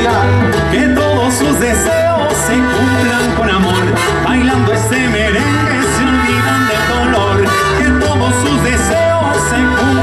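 A tropical sonora dance band playing live: trumpets over a steady, repeating bass and percussion beat.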